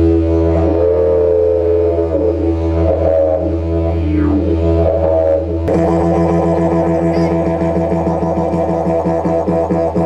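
Didgeridoo drone, a deep steady tone with shifting, gliding overtones. About halfway through it switches abruptly to a fast pulsing rhythm.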